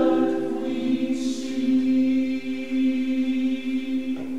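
Male voice choir holding a long final chord in a reverberant church, the sound cutting off and dying away just at the end.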